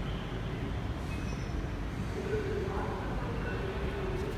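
Kawasaki Heavy Industries C151 MRT train at an underground station platform, giving a steady low rumble; a few steady humming tones come in about halfway through.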